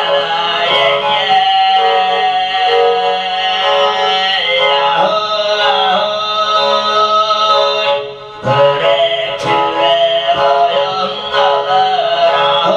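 A man singing a Tuvan song with many strong overtones, accompanied by the bowed two-string igil fiddle, with a brief breath-pause about eight seconds in.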